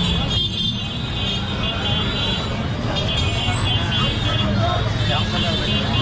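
Street hubbub in a crowded night market: many people talking at once over the steady running of auto-rickshaw and motorbike engines in slow traffic.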